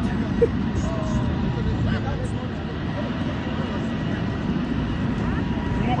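Steady low rumbling outdoor noise with scattered voices of people walking nearby, and one short knock about half a second in.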